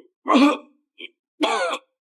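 A man coughing hard twice, about a second apart, with a short faint catch of breath between.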